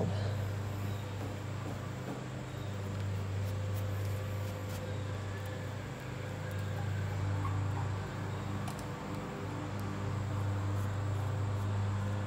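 A steady low mechanical hum with a few fainter overtones above it, swelling and easing slightly in level.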